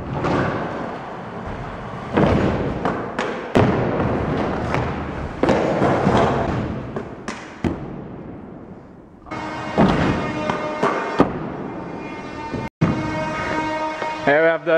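Stunt scooter wheels rolling on wooden ramps and the concrete floor, with several sharp thuds of landings and deck impacts in the first part. Steady music takes over in the last few seconds.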